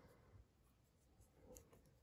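Near silence, with a couple of very faint soft ticks and rubs from knitting needles and yarn being handled.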